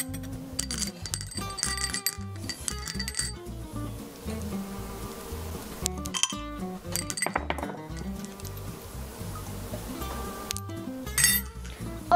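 Metal spoon clinking against a small glass bowl as M&M's are scooped up, over background music with a steady beat.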